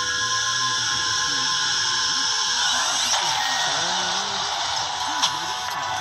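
Cinematic studio-logo music, sustained high tones over a low wavering bed, with a rising whoosh about halfway through, played through a small portable TV's speaker.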